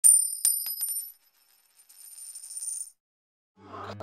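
A bright, high-pitched chime sound effect for a title card: several quick strikes in the first second that ring on and fade, followed by a fainter, shimmering echo that dies away about three seconds in.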